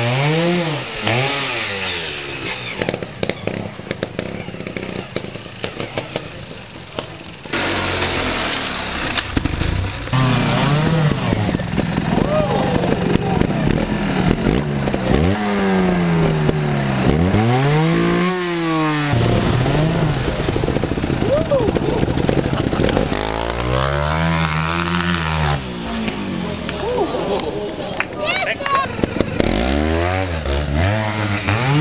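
Trials motorcycle engine revved in repeated short bursts, each one rising and then falling in pitch, with idling between.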